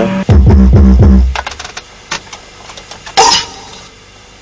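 Studio playback of drum and bass production sounds: a loud, deep bass passage sliding down in pitch in the first second, a few sharp clicks, then about three seconds in a short loud bark, a producer's own voice sampled and processed as an effect.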